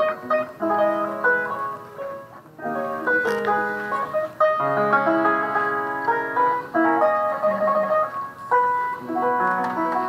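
A 1787 Broadwood square piano being played: a running passage of notes, with a short break about two and a half seconds in.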